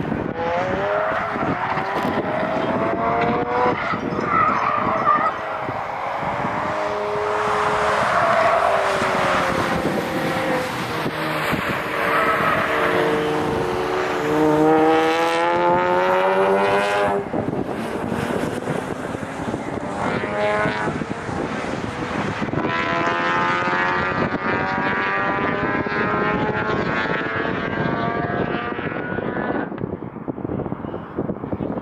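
Cars at speed on a track course, their engines revving up through the gears: the pitch climbs, drops back at each shift and climbs again. One long pull ends suddenly about halfway through, and another car's engine climbs through its gears in the second half.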